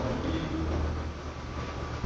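A low, steady rumble with faint, indistinct voices in the background.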